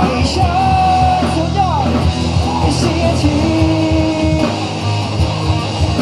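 Live rock band playing: guitars, bass and drums, with a male voice singing long held notes.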